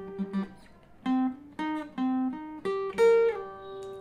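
Acoustic guitar, without its capo, playing a single-note riff, starting about a second in. Picked notes fall on the D string's 10th and 13th frets, then the G string's 12th, then the B string's 11th fret, which slides back to the 8th and rings.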